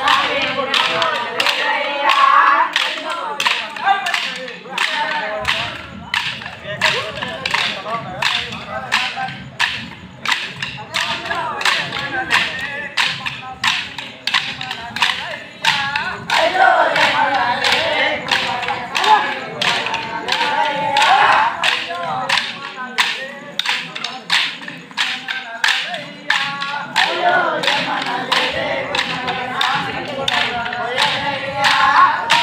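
Wooden dance sticks clacked together in a kolatam-style stick dance, in a steady rhythm of about two strikes a second, with a group of men singing along.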